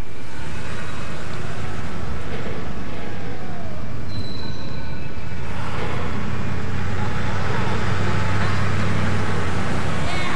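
Opening sound of a film's soundtrack: a steady rumbling noise that grows deeper and stronger in its second half, with a brief high tone about four seconds in.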